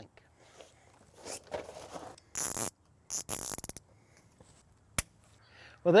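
Zip ties being pulled tight around hydraulic hoses: several short rasping zips, one with a fast ratcheting rattle, then a single sharp click about five seconds in.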